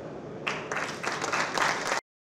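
Audience applauding, starting about half a second in and building in loudness as more hands join.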